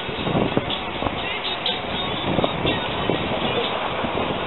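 Indistinct background voices and chatter over a steady outdoor hubbub, with no single loud sound.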